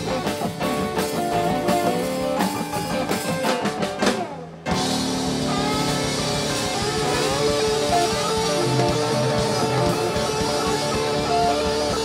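Live rock band playing an instrumental passage on electric guitars, keyboard, bass and drums. The sound dips sharply for a moment about four seconds in, then comes back with held guitar notes and bends.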